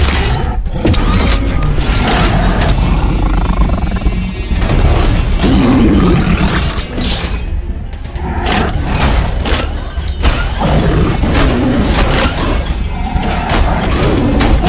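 Dramatic film-score music laid under a cartoon fight, with repeated heavy booms and impact hits, clustered about two-thirds of the way through and again near the end.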